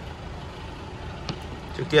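Steady low rumble of background vehicle traffic, with one light sharp click a little over a second in.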